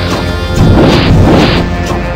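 Background music with crash and hit sound effects layered over it, the hits surging louder about half a second in and again about a second and a half in.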